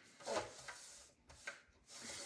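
A few short, faint rubs and taps of cardstock being handled on a craft work surface.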